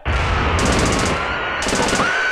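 A loud, dense burst of noisy sound effect with a rapid rattle running through it, played in place of a musical note. Faint tones slide slowly up and down beneath the noise.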